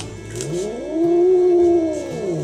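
Ginger cat giving one long meow that rises in pitch, holds, then falls away near the end.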